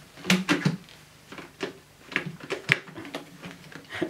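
Clicks and knocks of the Dyson Cinetic Big Ball vacuum's bin and cyclone assembly being worked by hand, a quick cluster in the first second and more scattered after. The bin mechanism will not shut easily and is being handled without forcing it.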